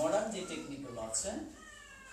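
A cat meowing two or three times, the first call the loudest.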